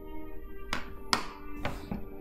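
Music playing from a television that has just been switched on, steady sustained tones, with a few sharp clicks over it in the second half.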